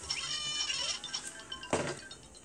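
Cartoon animal calls from an animated children's story app, faint and pitched, over light background music, with a brief noisy burst near the end.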